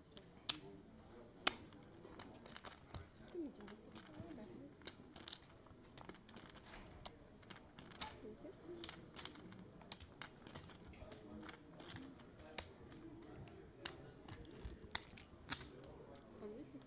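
Poker chips clicking as players handle their chip stacks at the table: a run of light, irregular clicks, some sharper than others.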